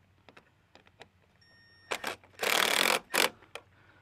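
Light clicks, then short bursts of scraping, rattling noise as a quarter-inch impact driver with a 5 mm Allen-bit extension is handled and brought to the clamp bolt of a roof-rack crossbar. The loudest burst lasts about half a second, a little past halfway.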